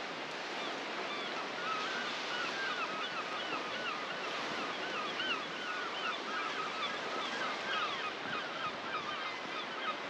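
A flock of birds calling: many short calls, each rising and falling, in quick overlapping succession from about a second in. Under them runs a steady noise of wind and water.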